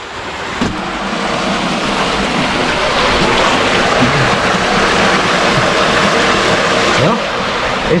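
Creek water pouring from a concrete culvert pipe and splashing onto the concrete apron below, a steady rushing that grows a little louder over the first couple of seconds and then holds.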